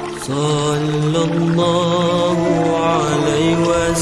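A selawat, an Islamic devotional song of blessings on the Prophet, sung as a long, ornamented melody with a wavering vibrato over a steady held backing. A new phrase begins just after the start.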